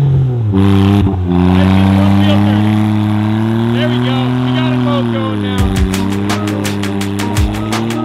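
Lifted Smart Car's small three-cylinder engine revving hard as its wheels spin to break free of the snow, the pitch dipping sharply about half a second in, then holding high before falling away. Music with a steady beat comes in after about five seconds.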